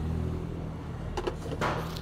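A car engine running steadily nearby, a low even hum, with rustling and knocks of the phone being handled in the second half.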